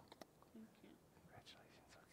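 Near silence with faint whispered words close to a headset microphone and a few small clicks.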